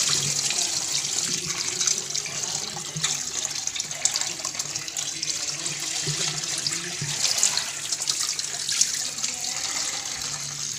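Tap water running steadily into a steel bowl of raw chicken pieces as hands rinse and turn them, splashing, with a few small knocks against the bowl.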